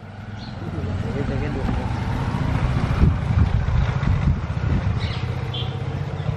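Women's voices talking faintly in the background over a steady low rumble.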